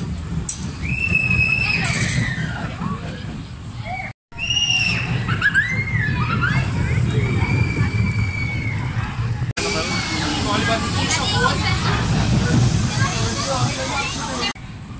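Kamelen, a Zierer Force family roller coaster: its train runs past on the steel track with a steady rumble. Long high squeals and shrieks rise and fall over it. The sound breaks off briefly twice.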